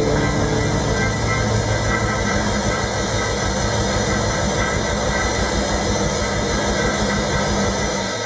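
Live band sustaining a droning passage: steady held low bass and keyboard tones under a dense, noisy wash of sound.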